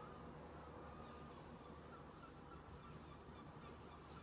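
Near silence: faint room tone with a low steady hum and a few faint, short high chirps.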